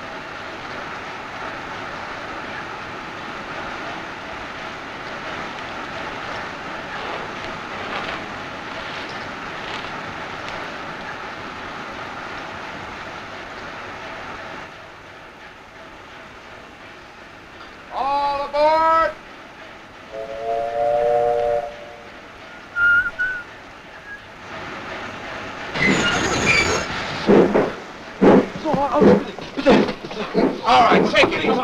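Steady rumble and hiss of a steam passenger train for the first half. After it drops away, a train whistle sounds a held three-note chord. Men's voices start talking loudly near the end.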